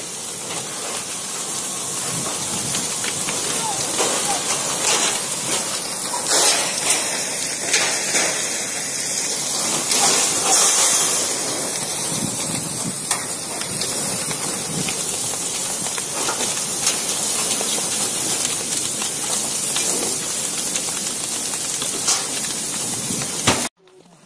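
Steady loud hissing of a fire hose's water jet striking a burning house and turning to steam, with occasional sharp cracks from the fire.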